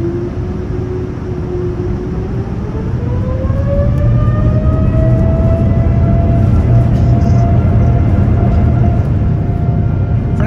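Boeing 787-9 jet engines spooling up to takeoff thrust, heard from inside the cabin: a whine that climbs in pitch over the first few seconds and then holds steady over a heavy rumble as the takeoff roll begins.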